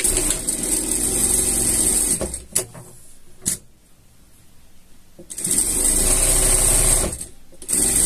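Industrial lockstitch sewing machine topstitching fabric in short runs: it runs for about two seconds, stops with a couple of light clicks in the pause, runs again for about two seconds, and starts up once more near the end.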